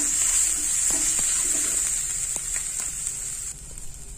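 Chopped vegetables and spice powders sizzling in hot mustard oil in a frying pan while a spatula stirs them, with a few light scrapes and taps against the pan. The sizzle drops away suddenly near the end.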